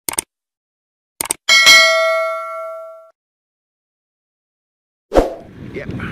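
Subscribe-button animation sound effect: two short clicks, then a bright bell ding that rings out and fades over about a second and a half. Just after five seconds comes a sudden thump, then wind on the microphone as a man starts to speak.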